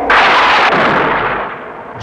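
Thunderclap sound effect with a lightning strike: a sudden loud crack that rumbles and fades away over about a second and a half.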